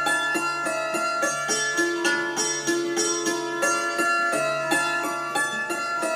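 Instrumental passage on an electronic keyboard: a quick melody of plucked-string notes in a hammered-dulcimer (hackbrett) voice, over sustained chords and a low held bass note.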